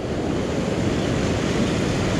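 Ocean surf breaking and washing up a sand beach, a steady rushing with no pauses, with wind rumbling on the microphone.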